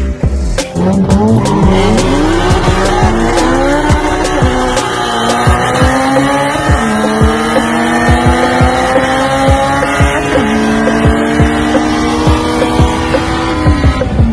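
Car engines under hard acceleration in a street race, rising in pitch over the first several seconds, then holding with a couple of step changes before dropping away near the end, with music underneath.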